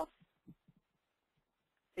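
Near silence, with a few faint, soft low thumps in the first second; a voice starts speaking right at the end.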